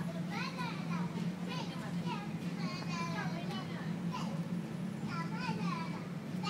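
Children's voices calling and shouting in the distance, over a steady low hum.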